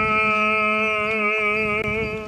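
Eastern Orthodox liturgical chant: one long sung note held on a single pitch with a slight waver.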